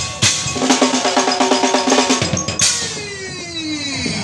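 Street performers' drumming: sharp strikes, with a quick run of hits in the middle, then a long tone sliding down in pitch near the end.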